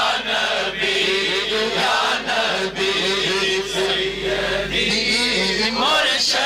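Men's voices chanting a devotional Urdu naat in praise of the Prophet, the crowd joining in. A long note is held steady through most of the middle before the chant moves on.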